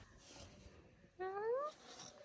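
A cat meowing once, a short call rising in pitch, just over a second in.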